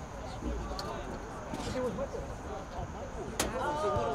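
Voices of players and spectators calling out across an outdoor soccer field, over a steady open-air background. One sharp knock stands out near the end.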